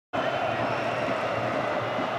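Large stadium crowd at a football match: a steady din of many voices.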